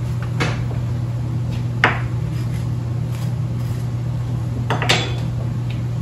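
A big metal spoon scraping the seeds out of a halved spaghetti squash, with three sharp clicks of the spoon knocking on the squash and board, over a steady low hum.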